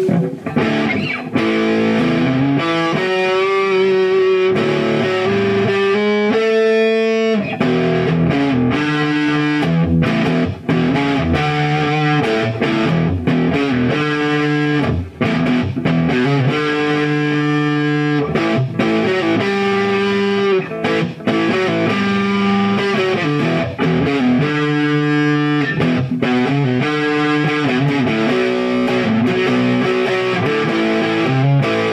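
Gibson SG Standard electric guitar played through an amplifier with the volume turned up, with a distorted tone: riffs and chords with held, sustained notes throughout, briefly dropping out about ten and fifteen seconds in.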